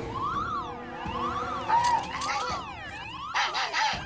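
A cartoon electronic warning sound: a warbling, siren-like tone sweeping up and down again and again over background music, then a quick run of electronic beeps near the end. It is the spaceship robot's alert about incoming bubbles.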